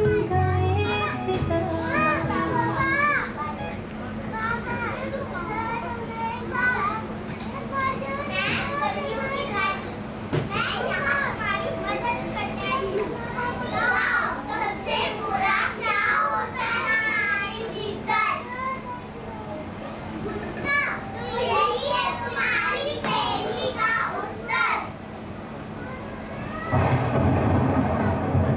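Several high children's voices talking and calling over one another, after recorded background music fades out in the first two or three seconds. A steady low hum runs underneath.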